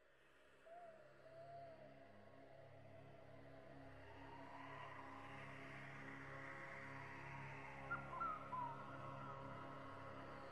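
Quiet ambient music fading in: a steady sustained drone, with a short wavering call about a second in and a few brief bird-like chirps about eight seconds in.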